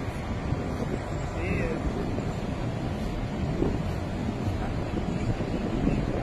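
Steady low outdoor rumble of wind and traffic noise on a phone microphone, with faint voices in the background.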